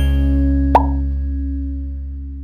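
End of an intro jingle: a held low chord that slowly fades, with a single short pop sound effect about three-quarters of a second in.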